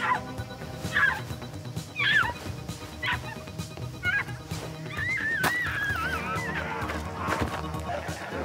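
A woman crying out in short, pained yelps about once a second, then a long wavering wail, over a dark film-score music bed.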